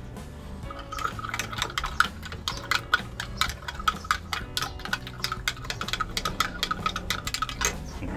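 Metal spoon stirring sugar into milk tea in a small glass measuring cup, clinking rapidly against the glass, several clinks a second, each with a short ring. The clinking starts about a second in and stops just before the end.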